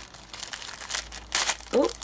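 Clear plastic cello bag crinkling as it is handled, with irregular crackles and a louder crinkle about a second and a half in, while a stuck item is worked out of it without ripping the bag.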